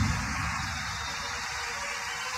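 A quiet break in a makina dance mix. A deep bass note fades out over about a second and a half under an even wash of hiss, between vocal phrases.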